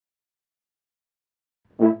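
Silence, then near the end the first short, loud note of a multitracked French horn quintet, several layered horn parts entering together.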